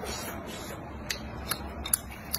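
Eating sounds from a close microphone: about three sharp, separate clicks in the second half, over a low steady hum, while spicy chili-coated skewered food is chewed and the bamboo skewers are handled.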